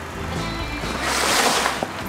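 A sheet of cartolina paper card rustling and flexing for about a second as it is picked up, over quiet background music.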